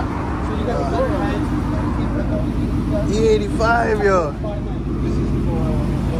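Supercharged Ford F-150's engine idling steadily, with men talking over it. A voice is loudest a little past the middle.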